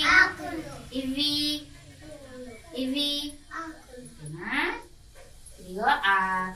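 Young children chanting in short sing-song phrases, with brief pauses between them.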